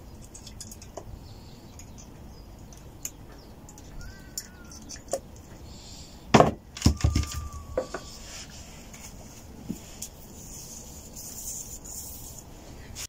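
Honda CB125F aluminium crankcase half being handled and set down on a workbench: scattered light clicks, with a cluster of louder knocks about six to seven seconds in. Brief faint squeaks of the mating surface being wiped clean.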